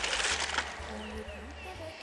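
A brief rustle of pineapple leaves in the first half-second, then faint voices in the background with a few short high chirps.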